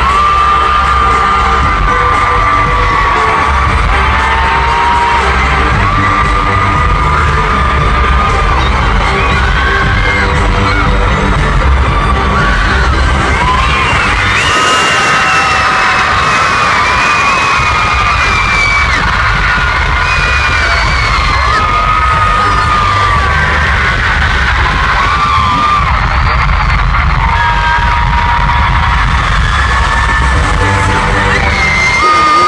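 Live pop concert in an arena: loud amplified music with heavy bass and a singing voice, with the crowd cheering and singing along. The bass drops out for a moment about halfway through.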